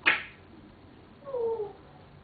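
African grey parrot calling: a sharp, loud squawk at the start, then, about a second later, a short call that falls slightly in pitch.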